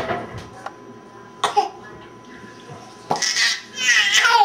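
Baby laughing in short bursts: a brief one about a second and a half in, and a louder, longer one near the end that falls in pitch.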